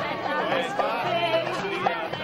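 Folk-style dance music led by a fiddle melody over a steady bass drone, with a crowd chattering over it.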